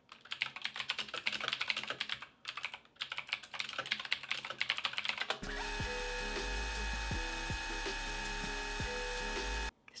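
Rapid typing on a computer keyboard, with a couple of short pauses, for about five seconds. Then it gives way to background music with held synth-like notes and a low hum until just before the end.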